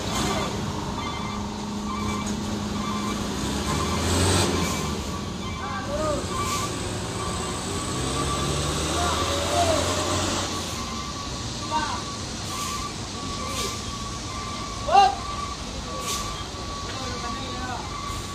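A heavy truck's engine running hard at low speed, with a reversing beeper sounding and men's voices calling out. One loud shout comes about three seconds before the end.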